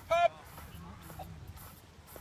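One short, high-pitched shout just after the start, the last of a chant of "pump", then a quiet stretch with only faint low background.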